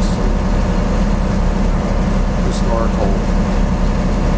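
The boat's engine running steadily underway, a low drone, with wind noise on the microphone.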